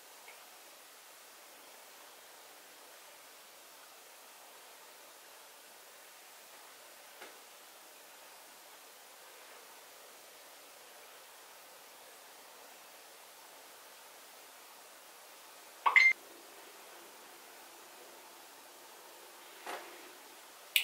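Faint steady hiss of room tone, broken about sixteen seconds in by one short, sharp, loud tone-like sound, with a few faint ticks elsewhere.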